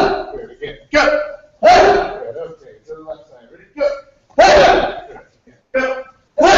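Group of martial arts students shouting together in short, loud bursts as they strike, each shout preceded by a shorter call, about four rounds in six seconds.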